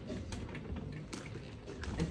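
A few light clicks and knocks over low room noise, from the hardshell guitar case being handled on the floor.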